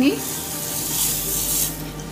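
Granulated sugar pouring in a stream into boiling milk: a steady hiss that fades away near the end.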